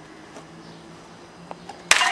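Faint steady background hum with a few soft clicks, then a sudden loud crack near the end as the thrown cup smashes into the potatoes on the brick stand.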